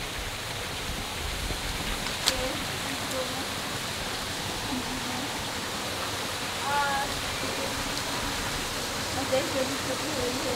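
Steady rushing of a small waterfall pouring down rock into a pool, with faint voices over it and one sharp click about two seconds in.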